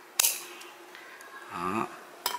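Metal pruning shears snipping through a small bonsai branch: one sharp snap about a fifth of a second in, with a brief ring after it.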